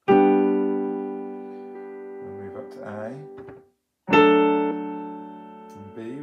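Piano chord struck under a violin bowing a held G, the scale's first note, played with the third finger on the D string. About four seconds in a new piano chord comes with the violin moving up to A, and a voice speaks briefly between the two notes.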